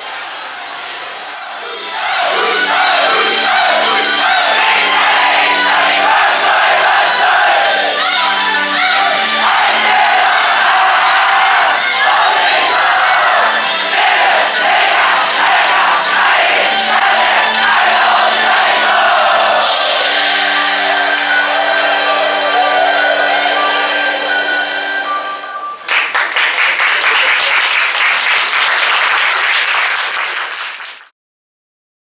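Live idol-group concert sound: a loud pop backing track with a group of female voices singing and the audience chanting along. About 26 seconds in, the music gives way to cheering and applause, which fade out at the end.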